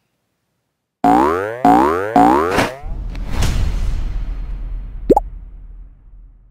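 End-card logo sound effects: after about a second of silence, three quick tones each glide upward, then a swell of noise over a low rumble fades out, with a short upward sweep near the end.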